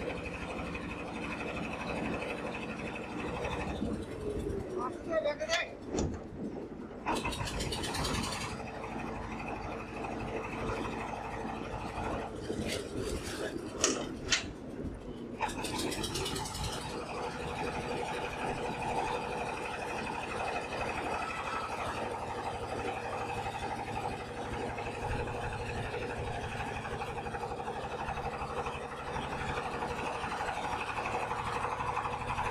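Small boat engine running steadily, with a few sharp knocks and people's voices in the middle.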